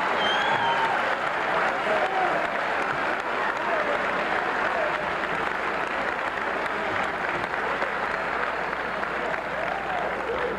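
Audience applauding, with voices calling out over the clapping in the first half; the applause eases slightly near the end.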